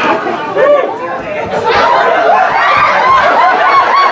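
Crowd chatter: many voices talking over one another at once, with a little laughter mixed in.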